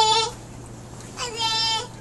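A toddler's high-pitched vocalising: a drawn-out call that trails off just after the start, then a second long, level call about a second in.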